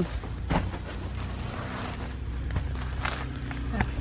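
Rustling and handling noise of plastic-wrapped packages and paper bags being unpacked, with a few faint clicks, over a steady low hum.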